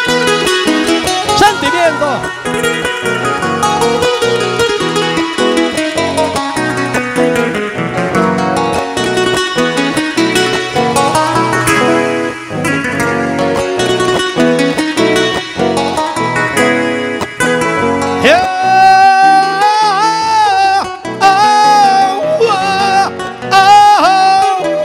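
Acoustic guitars playing a Panamanian décima accompaniment with a quick plucked and strummed pattern. About three-quarters of the way through, a man starts singing long, drawn-out notes with a wavering pitch over the guitars.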